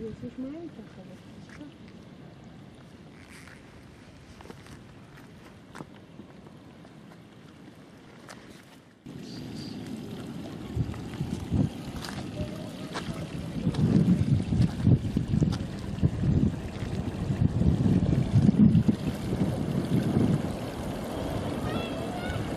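Outdoor ambience of indistinct voices over low, rumbling background noise. The sound jumps louder at an edit about nine seconds in, and louder again from about fourteen seconds.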